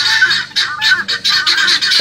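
A flock of domestic helmeted guineafowl calling in a harsh, rapid chatter of short, overlapping cries: alarm calls aimed at an intruding animal that they are 'yelling at'.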